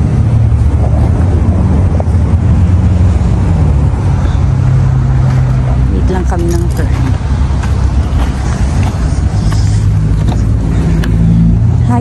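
Car engine idling close by, a low steady hum that shifts slightly in pitch, with a brief voice about six seconds in.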